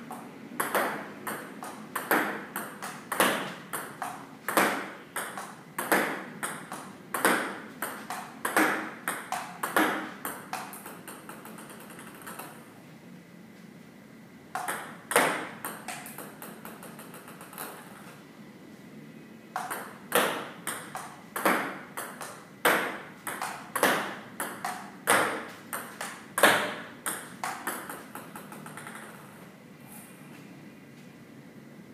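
Celluloid-type table tennis ball clicking through a solo rally, striking the paddle, bouncing on the table and rebounding off a return board propped at the far end, a few hits a second. The rally breaks off a few times, leaving short gaps between runs of hits.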